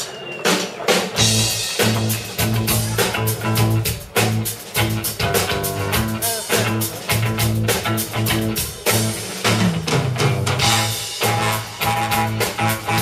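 Live rock band with drum kit and electric guitar starting a song with an almost marching-band sound: a few drum strokes, then the full band comes in about a second in and plays on in a steady, driving rhythm.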